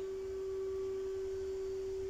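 A steady hum at one unchanging mid pitch, like a pure tone, holding at an even level.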